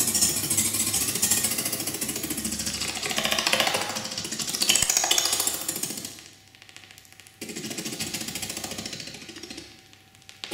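Granular synthesizer (the ag.granular.suite in Max/MSP) played live from a multitouch controller: a dense, rapidly pulsing stream of grains. It drops away about six seconds in, returns a second or so later, and fades out near the end.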